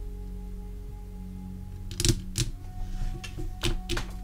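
Soft background music with a steady low drone, and a handful of sharp clicks and taps of tarot cards being handled: two close together about two seconds in, another shortly after, and a few more near the end.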